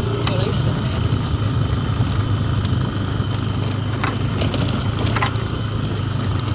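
Motorcycle engine running at a steady pitch while riding, a low even hum with a constant rush of road and wind noise.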